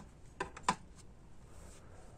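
Two light clicks about a third of a second apart, from a tool being handled, over quiet room tone.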